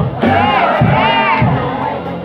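A congregation singing and calling out together over gospel music with a steady low beat.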